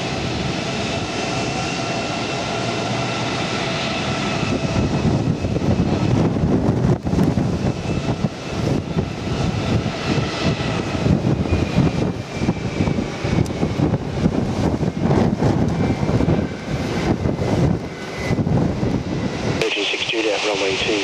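Jet airliner engines with a steady whine that slowly drops in pitch, heard under heavy gusty wind buffeting the microphone. The wind rumble grows rougher and louder a few seconds in.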